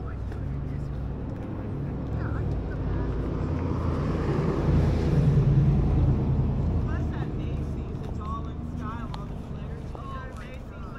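An engine passing by, a low hum that grows to its loudest about halfway through and then fades away.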